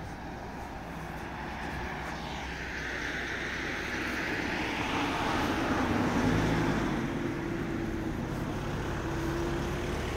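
A car driving past on the street: tyre and engine noise swell to a peak about five or six seconds in, then give way to a steady low traffic hum.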